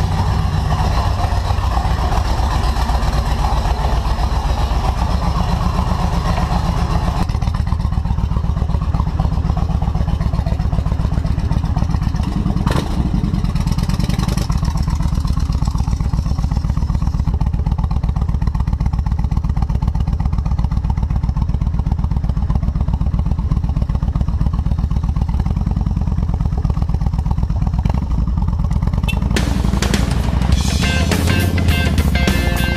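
Cruiser motorcycle engine running steadily, heard from the rider's helmet, first in the garage and then riding off along a road. There are a couple of sharp clicks about halfway through.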